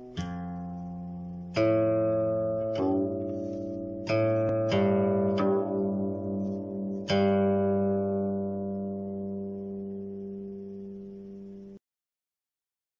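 Guqin notes plucked one at a time, about six of them, each ringing on and slowly fading; one held note wavers in pitch. The sound cuts off abruptly near the end.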